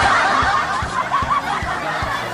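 Laughter over background music with a steady low beat.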